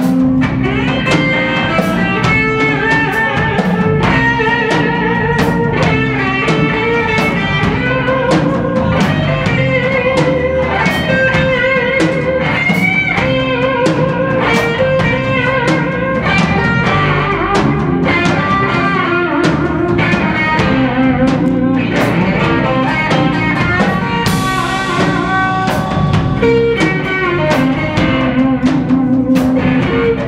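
Live blues band playing an instrumental passage: a Stratocaster-style electric guitar plays single-note lead lines with wavering, bent notes over a steady drum-kit beat. A cymbal crash comes near the end.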